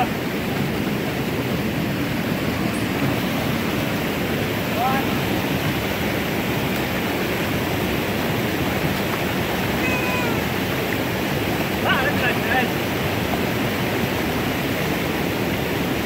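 Steady rush of creek water pouring over a small waterfall and rapids, an even, unbroken roar.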